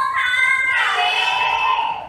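Young women's voices over a stage PA in one long drawn-out call, the pitch dropping about halfway through.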